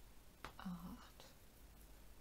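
A woman's voice softly saying a single counted number, with near silence before and after.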